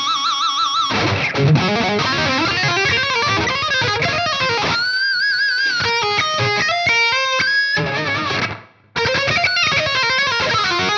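Solar X1.6 Ola electric guitar with Seymour Duncan Solar pickups, played through a high-gain distorted tone: a metal lead with held notes bent in wide vibrato, dense low riffing, and a climbing run of notes. The sound cuts off suddenly about a second before the end, then the playing starts again.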